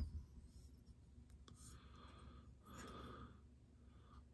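Near silence: room tone, with a faint click at the start and a soft rustle about three seconds in.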